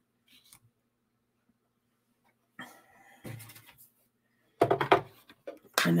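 Handling of plastic cutting plates and die-cutting platform: a few soft rustles and knocks as the plate sandwich is assembled, then a sharp clatter about four and a half seconds in, the loudest sound, as a plate is set down.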